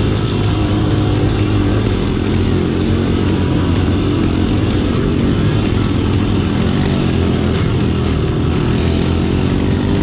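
Dirt bike engine running steadily while riding along a trail, heard close up from on the bike.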